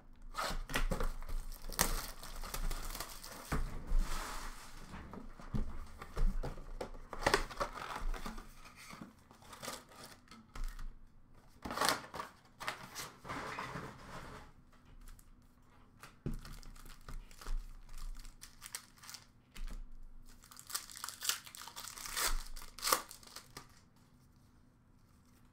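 Cardboard of an Upper Deck hockey card box being torn open and its wrapped card packs handled, with irregular tearing and crinkling of wrappers.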